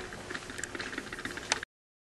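Faint rustling and small irregular clicks of handling noise, with one sharper click about a second and a half in; then the sound cuts off to dead silence.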